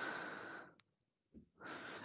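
A person breathing close to the microphone: a soft out-breath, about a second of near silence, then an in-breath near the end.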